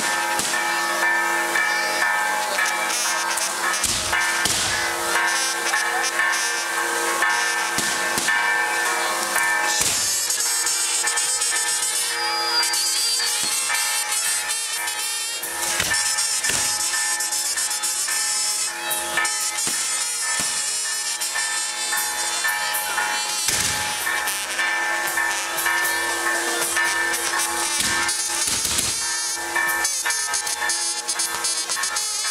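Music with long held notes over the steady hiss and crackle of a castillo, a fireworks tower, burning. Sharp bangs come every few seconds.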